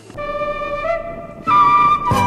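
Background music: a flute-like wind instrument playing slow held notes. It steps up slightly about a second in, then jumps to a higher, louder note about a second and a half in.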